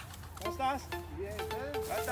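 Voices talking over background music, with held notes coming in partway through.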